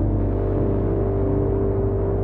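A low, steady drone in dark ambient experimental music, cutting in suddenly with a deep hum and a held higher tone above it.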